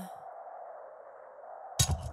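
A held, sung note of the cartoon's soundtrack slides down and breaks off at the start, leaving a faint, fading hiss; a voice starts speaking near the end.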